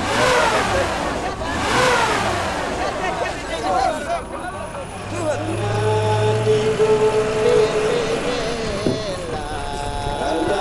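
Pickup truck engine running, with men's voices talking over it.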